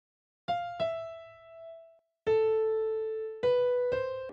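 Single piano notes from the FL Keys plugin sounding one at a time as they are placed in the piano roll. There are two short notes close together early on, a pause, then a lower note held for about a second and another just above it near the end.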